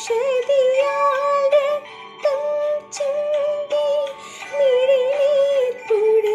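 A woman singing solo, a slow melody of long held notes that waver gently in pitch, with short pauses for breath between phrases.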